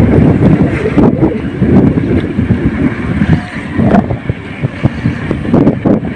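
Wind buffeting the microphone of a camera on a moving bicycle: a loud, uneven low rumble.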